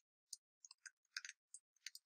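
Computer keyboard keys being typed, about ten faint, separate keystroke clicks at an uneven pace as a terminal command is entered.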